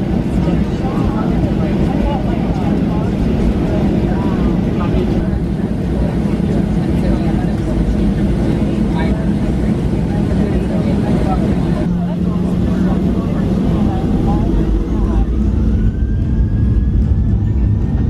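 Cabin noise inside a Boeing 737 on the ground: a steady low rumble from the engines and airframe, with faint voices in the cabin. Near the end an engine whine rises and then holds steady.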